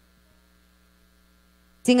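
Steady low electrical mains hum in the audio chain, heard alone during a pause in the talk. A voice starts speaking near the end.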